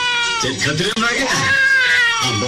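A high-pitched human voice wailing in long, sliding cries, one falling and one rising, over a lower voice speaking.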